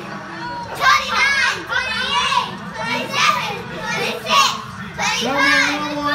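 Children shouting and squealing excitedly, high voices overlapping in short bursts.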